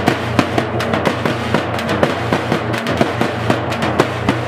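Fast, steady drumming with music, about four sharp strokes a second over a low steady hum.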